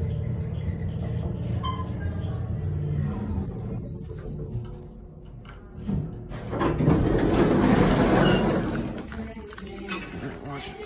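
Old Otis elevator stopped at the bottom floor: a steady low machine hum, then about six and a half seconds in a loud noisy rush lasting a couple of seconds as the car doors open.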